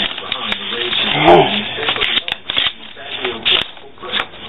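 Paper rustling and crinkling as an envelope is handled and a card is drawn out of it, with many short crisp crackles. A brief vocal sound comes about a second in.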